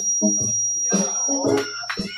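Voices singing or chanting to a beat of sharp hits about twice a second, with a steady high-pitched whine over it.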